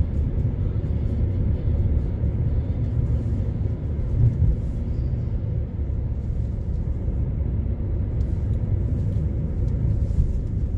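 Steady low rumble of a vehicle on the move: engine and road noise, swelling briefly about four seconds in.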